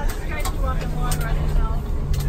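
Tour coach driving, heard from inside the cabin: a steady low rumble with an even engine hum under it.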